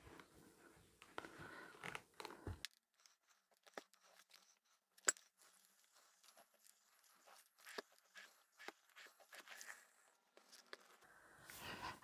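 Near silence: faint rustling of a household iron sliding and pressing over folded fabric for the first couple of seconds, then scattered soft clicks and taps, with one sharper click about five seconds in.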